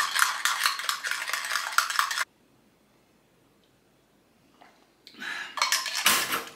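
A spoon clinks rapidly against a glass as powdered greens are stirred into water by hand. The clinking cuts off suddenly about two seconds in and starts again about a second before the end.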